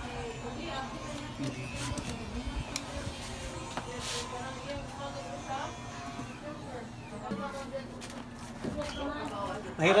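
A few sharp metal clicks as tire levers work a knobby motorcycle tire's bead onto a spoked rim, over faint background voices.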